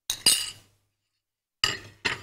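Kitchen utensils clinking against a cooking pan in two short bursts, about a second and a half apart, each a sharp knock that quickly fades. This is the sound of a bowl and spoon being knocked against the pan after puréed tomato is added to a curry.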